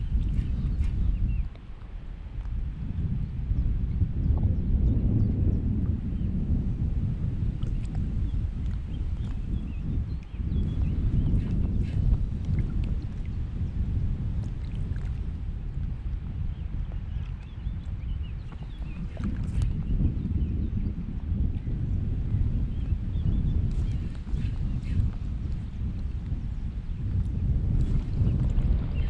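Strong gusty wind buffeting the microphone: a heavy low rumble that swells and eases in gusts, with a few faint ticks above it.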